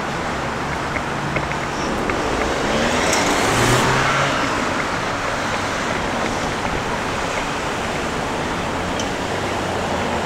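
Street traffic: cars driving past at an intersection, with one passing closer and louder about three to four seconds in, its engine hum rising and falling away.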